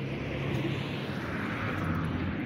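A car driving past on the road: a steady rush of engine and tyre noise that swells toward the end.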